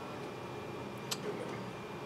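Low room noise with a single sharp click a little over a second in, a fingertip tapping a tablet touchscreen.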